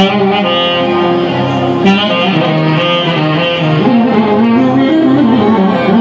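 Loud live band music through a PA system: a saxophone carries a winding melody over violin and keyboard.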